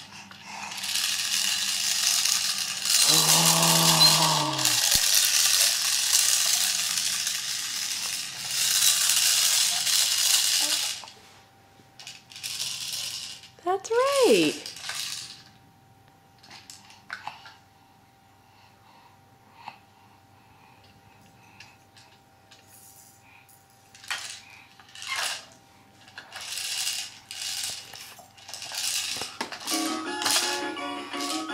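Plastic baby toy rattling for about the first ten seconds, with a falling tone partway through; after that only scattered clicks and taps from the toys, and a short rising-and-falling squeal about halfway.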